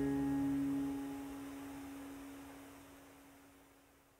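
The final strummed chord of an acoustic guitar ringing out and dying away. Its higher notes fade within the first second, one low note lasts longest, and the sound is gone by about three seconds in.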